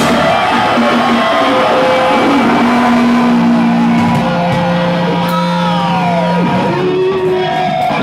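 Live prog metal band with distorted electric guitars holding long sustained notes, a few of them sliding down in pitch about five to six seconds in.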